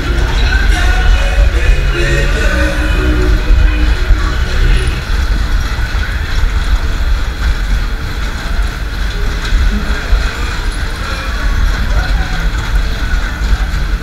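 Loud fairground ride music with a heavy bass, over the rush and rumble of a Matterhorn ride car running at speed. The music is clearest in the first few seconds, then is partly covered by the noise of the ride.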